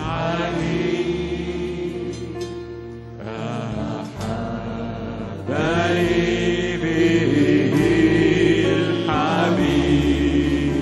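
A man's voice singing an Arabic Christian worship hymn with instrumental accompaniment, in two long phrases with a short lull between them.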